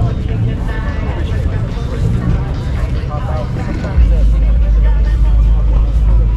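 Background chatter of people talking, over a steady low rumble that jumps much louder about four seconds in.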